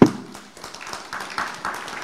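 A sharp knock right at the start, typical of a live microphone being bumped or handled, followed by faint rustling and small taps.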